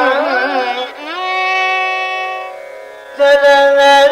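Carnatic classical music in raga Todi: a melodic phrase with wide, rapid oscillating ornaments (gamakas), then a long held note that slowly fades, and a new phrase entering loudly a little after three seconds.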